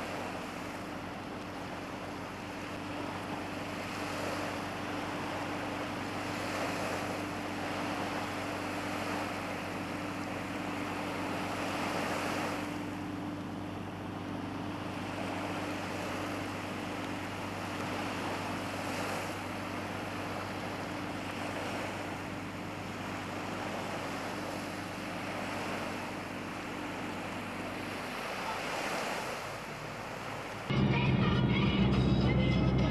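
Small sea waves breaking on a sandy shore, the surf swelling and falling back every few seconds. A steady low hum runs underneath and stops shortly before the end.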